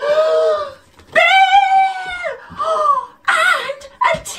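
A woman's gasp, then a long, high, drawn-out cry that falls away at the end, followed by two shorter vocal sounds: a theatrical cry of fright.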